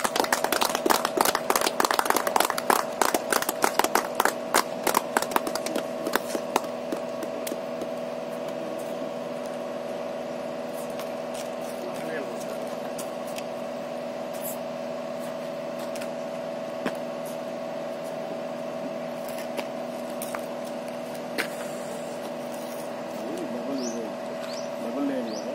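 Hands clapping in quick, even claps that thin out and stop about six seconds in, then a steady low hum with a few scattered clicks.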